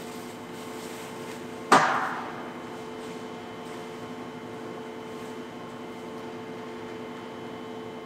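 A steady machine hum of several even tones from shop equipment, broken about two seconds in by a single sharp knock that rings briefly.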